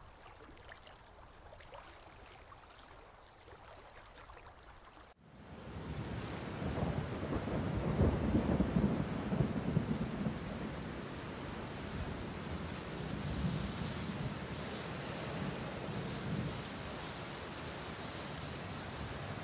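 Faint rustles at first; then, about five seconds in, a steady rush of rain begins, with a low thunder rumble building in the middle before it settles back to even rain.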